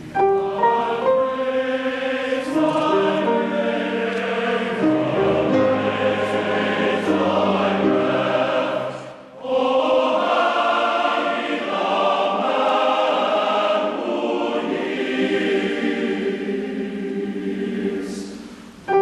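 Large men's choir singing sustained chords in harmony, with a short break about nine seconds in before the next phrase.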